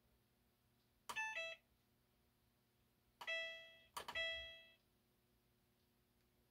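Maytag Bravos XL washer's control panel beeping as its buttons are pressed: a quick run of a few electronic tones about a second in, then two ringing beeps about three and four seconds in, each fading away.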